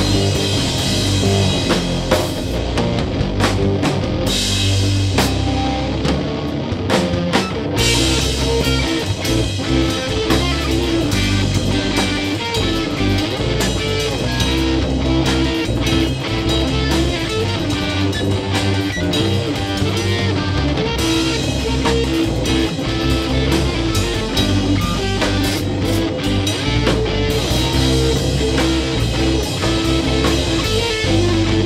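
Live rock band playing an instrumental passage: electric guitar and drum kit, loud and continuous.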